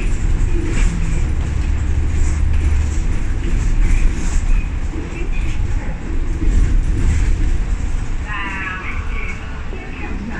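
Double-decker bus under way, heard from inside the lower deck: steady low engine and road rumble with light rattles from the cabin. A short pitched sound comes near the end.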